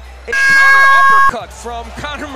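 Air horn sound effect blaring one steady note for about a second, then cutting off suddenly, with voices under it.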